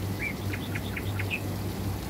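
A small bird chirping: a short arched note, then a quick run of about six sharp notes, over a steady low hum.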